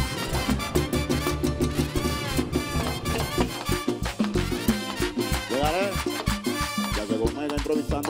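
Live Dominican mambo (merengue) band playing: trumpet and trombone lines over a steady, pulsing dance beat of bass, congas and metal güira.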